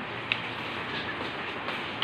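Steady background noise, an even hiss with no pitch or rhythm, with one faint click about a third of a second in.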